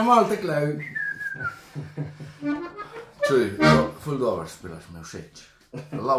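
Short reed notes from a Lanzinger diatonic button accordion mixed with a man's voice talking and laughing, with a brief falling high tone about a second in.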